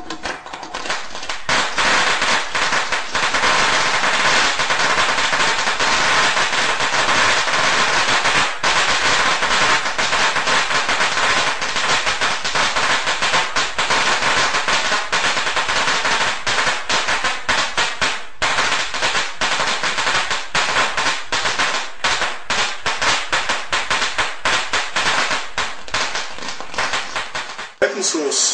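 High-voltage plasma spark discharging from a spark plug in a plasma (water spark plug) ignition circuit, driven wide open at about 120 volts: a loud, rapid, continuous crackle of snapping sparks. It starts about a second in, and the snaps grow more separated in the second half before stopping just before the end.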